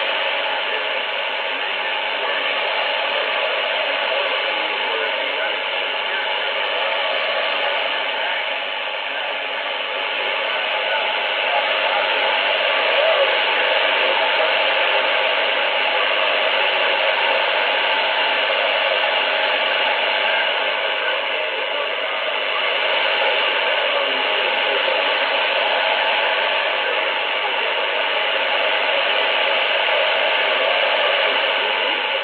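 Shortwave AM broadcast on 6070 kHz coming out of an Icom IC-R75 communications receiver: steady hiss and static over a weak signal, with faint, unintelligible speech from the station. The audio is narrow and muffled, and its level swells slightly as the signal fades.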